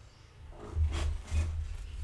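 Handling noise from a book on a desk: a few dull bumps and brief rubbing, rustling sounds, starting about half a second in.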